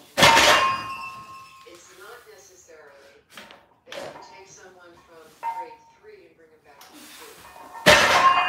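A barbell loaded with 305 lb of weight plates being set down on the gym floor during deadlift reps: a heavy clank with a ringing metallic tail just after the start, and again just before the end.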